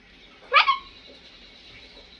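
A single short, high yelp about half a second in, sweeping sharply up in pitch and ending on a brief held note.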